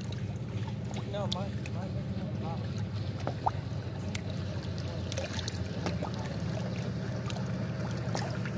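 Small waves lapping and splashing against shoreline rocks, over a steady low drone from a passing motorboat's engine.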